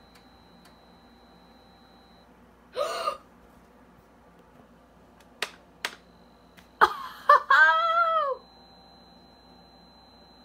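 Two sharp clicks from the Compaq keyboard's keys, about half a second apart, as the MS-DOS date and time prompts are skipped. Then comes a loud excited wordless vocal exclamation whose pitch rises and falls. A faint high steady whine comes and goes underneath.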